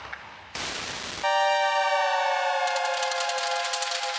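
Jump-up drum and bass build-up with no bass. About half a second in there is a short burst of white noise. Then a loud, sustained siren-like synth chord slowly falls in pitch, and fast, even high ticks come in about two-thirds of the way through.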